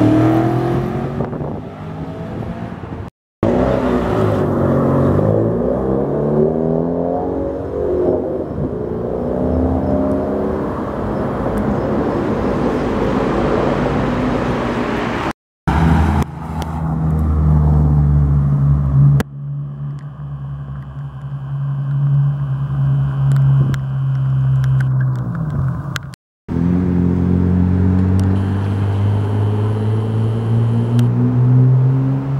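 Performance car engines accelerating away, heard in several short separate clips with abrupt cuts between them: engine notes rising and falling through gear changes, a steady loud drone about halfway through, and a rising engine note near the end. One of them is a Mitsubishi Lancer Evolution VI's turbocharged four-cylinder.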